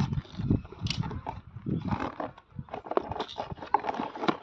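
A cardboard box being cut open with a box cutter and handled: irregular scratching and scraping with short knocks as the box is shifted and set down.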